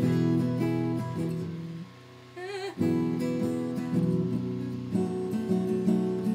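Acoustic guitar strummed in chords. The playing stops briefly about two seconds in, then starts again.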